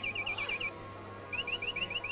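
Mechanical singing bird automaton whistling a rapid trill of short chirps. The trill breaks off just past a third of the way through, then comes back as a run of quick rising chirps, several a second.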